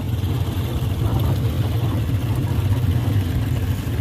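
Motor vehicle engines running with a steady low rumble.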